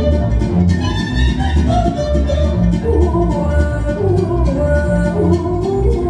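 Lively Romanian folk music: a violin carries the melody over a steady pulsing beat in the bass.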